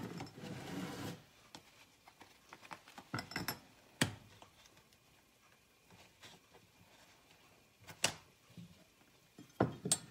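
Kitchen things being handled while cream is measured out: a soft rustle in the first second, then a few scattered knocks and clinks several seconds apart.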